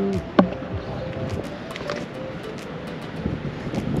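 Wind blowing over the microphone outdoors, a steady rushing noise, with a few light scattered clicks of footsteps on a paved path.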